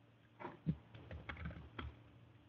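Faint typing on a computer keyboard: a quick, uneven run of key clicks starting about half a second in.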